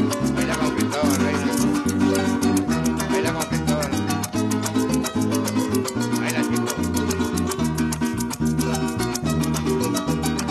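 Llanero joropo ensemble playing an instrumental passage without singing: harp melody and bass notes over strummed cuatro, with maracas shaking steadily at a fast beat.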